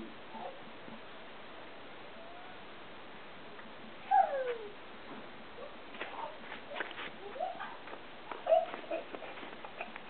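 A small child's wordless vocal sounds: one louder squeal with a falling pitch about four seconds in, then a few fainter short calls, over a steady faint hiss.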